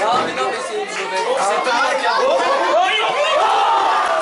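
Many voices shouting and chattering over one another at an amateur football match, with one drawn-out call near the end.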